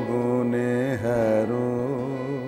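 A man singing a Bengali song in long, held notes with a wavering pitch, over the steady drone of a harmonium.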